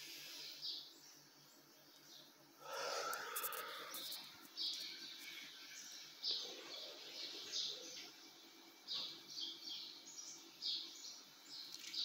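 Birds chirping in the trees: many short, high calls repeating every half second or so. A brief louder noise comes about three seconds in, over a faint steady low hum.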